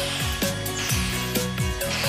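Upbeat cartoon background music with a bass line of short falling notes, over the whirring of a toy-like vacuum sound effect sucking up ants.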